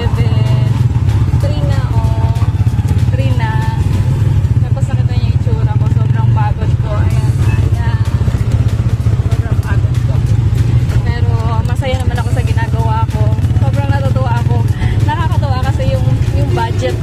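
A motor vehicle's engine running with a steady low drone, heard from inside the vehicle while riding.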